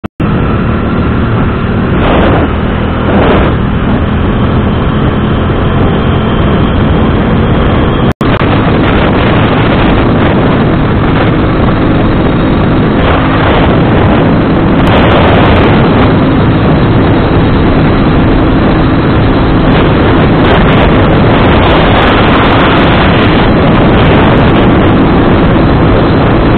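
Motorcycle engine running at a steady cruise with heavy wind rush on the microphone while riding. The sound cuts out for an instant about eight seconds in.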